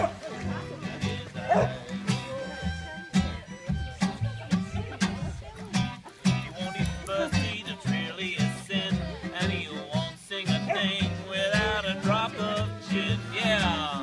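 Small acoustic band of fiddle, acoustic guitar, double bass and piano accordion playing a tune together, the double bass keeping a steady pulse underneath.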